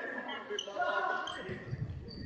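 Futsal ball kicked and bouncing on a sports hall floor, with a few dull thuds near the end, under voices calling out in the echoing hall.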